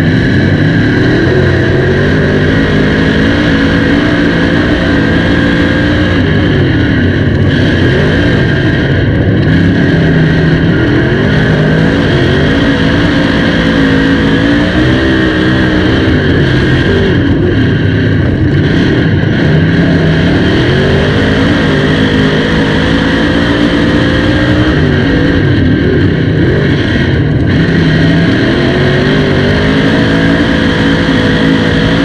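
Dirt modified race car engine at racing speed on a dirt oval, loud throughout, its revs rising and falling again and again as the throttle comes on and off.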